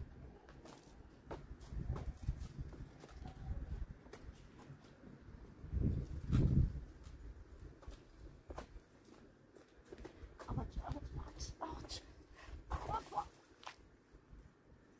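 Scuffs, knocks and handling rumble as a person clambers up onto a low brick wall, with a heavy bump about six seconds in. A few short voice sounds come near the end.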